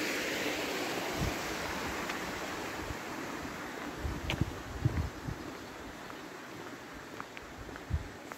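Snowmelt water running along a concrete roadside drainage channel, a steady hiss that slowly fades, with a few soft footsteps.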